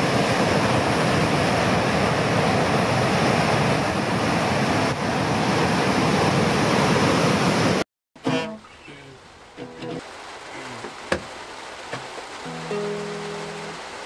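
Loud, steady rush of breaking ocean surf, cutting off abruptly about eight seconds in. Then quieter handling noise and a click, and near the end a few held notes plucked on an acoustic guitar.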